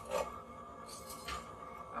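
Metal spoon scraping and stirring damp, partly frozen potting soil in an enamel pot, two short scrapes about a second in, over a faint steady hum.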